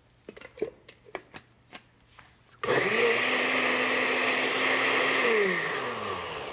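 Countertop blender puréeing salsa roja of charred tomatoes, onion, garlic and chipotles: a few light clicks and knocks, then the motor starts suddenly about two and a half seconds in, runs steadily, and winds down with falling pitch near the end.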